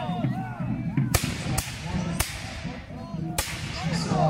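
Four sharp black-powder musket shots in a ragged sequence: the first about a second in, two more within the next second, and the last about a second after those.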